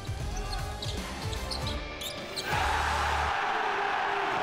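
Basketball game sounds in a gym: the ball bouncing on the hardwood with short high sneaker squeaks. About two and a half seconds in, a large crowd breaks into loud cheering that continues.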